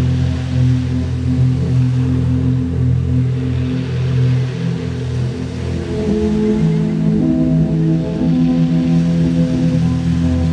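Slow ambient music of long held, droning tones, its chord shifting about six seconds in, over a swelling and fading hiss of surf breaking on a pebble shore.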